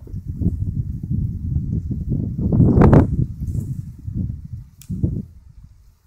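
Wind buffeting the phone's microphone in gusts: a low rumble that swells to its loudest about three seconds in and dies away near the end.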